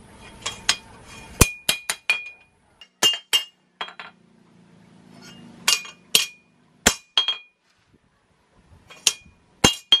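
Hand hammer striking a golok blade of car leaf-spring steel on a steel anvil: about twenty irregular blows in short groups, each with a bright metallic ring.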